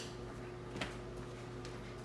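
A steady low electrical hum with a couple of faint, short handling rustles, one right at the start and one about a second in.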